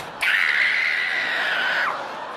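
A person screaming in fright at a cockroach: one long, high scream that starts just after the beginning and drops in pitch as it cuts off near the end.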